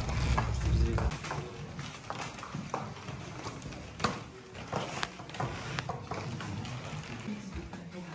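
Footsteps on a wooden parquet floor, with scattered sharp taps and faint voices of other people in the room. A low rumble stops about a second in.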